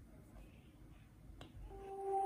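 Near silence broken by a single sharp click about one and a half seconds in, then music starting faintly from the rebuilt Bluetooth speaker near the end and growing louder.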